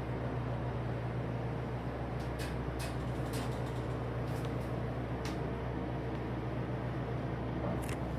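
Steady low hum and rumble of a hydraulic elevator car travelling down, heard from inside the cab, with a few faint ticks in the middle.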